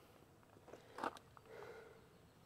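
Quiet handling of a jump-starter cable clamp against the truck's metal, with one sharp click about a second in and a few fainter ticks.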